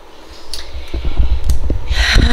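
Loud low rumble with scattered knocks from a handheld camera being moved and swung around, building from about half a second in.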